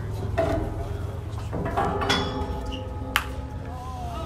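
A single sharp crack of a bat hitting a pitched baseball about three seconds in, sending it up as a foul pop, over background voices from the crowd and players.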